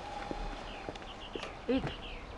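Hard-soled shoes stepping on a paved patio, sharp clicks about twice a second, as someone walks away. Short falling bird chirps sound in the second half, and a steady tone runs through the first half and stops about halfway.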